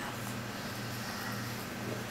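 Steady low hum with faint hiss: the room tone of a meeting room during a pause in speech.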